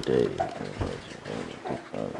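A man's low, indistinct murmuring voice, in short grunt-like bits with no clear words.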